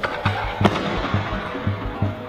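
A few sharp knocks and a clatter in the first second as a loaded Eleiko barbell is snatched: the lifter's feet land on the wooden platform and the plates rattle as he drops under the bar. The loudest knock comes about two-thirds of a second in, over background music with a steady beat.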